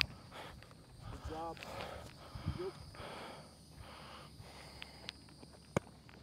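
Faint outdoor sound with a distant voice calling briefly, its pitch rising, and a couple of sharp taps, one right at the start and one near the end.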